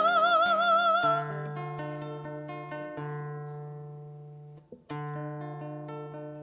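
A woman's sung note, held with vibrato, ends about a second in; an acoustic guitar then plays on alone, its chords ringing and fading, with a short break before a fresh chord near the end.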